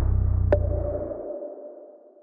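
Electronic logo sting fading out: a deep bass note dies away while, about half a second in, a sharp click sets off a single ping-like ringing tone that slowly fades.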